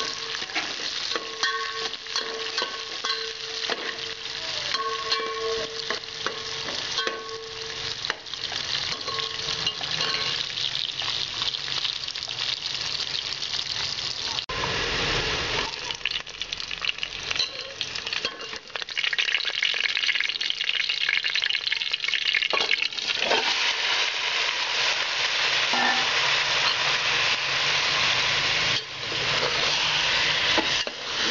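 Sliced onions frying in hot oil in a metal pot, sizzling steadily, with a steel spoon scraping and clicking against the pot as they are stirred. The sizzle gets louder in the second half.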